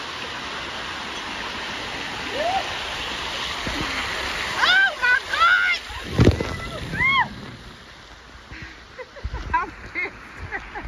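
Water pouring steadily from an overhead rain-curtain bar into a pool channel, picked up by a phone in a waterproof case. About six seconds in, water splashes loudly right onto the phone. Around it, between about five and seven seconds, come several short, high vocal cries.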